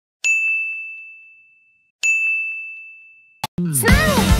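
A bright, bell-like ding sound effect struck twice, about two seconds apart, each ringing out and fading slowly. A short click follows, then upbeat music starts just before the end.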